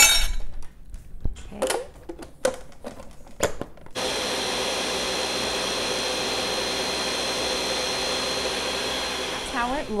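A few knocks and clinks at the blender jar, then about four seconds in a Ninja Professional 1000-watt blender starts and runs steadily for about five seconds with a thin high whine, blending ice with almond milk into a smoothie.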